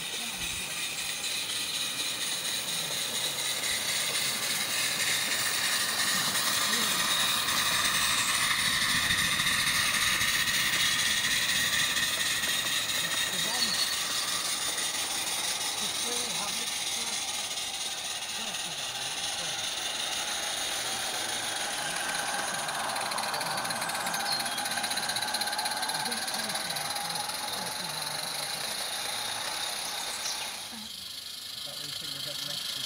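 Live-steam garden-railway locomotive running on the track: a steady steam hiss with wheels rattling over the rails, growing louder over the first several seconds and easing slightly toward the end.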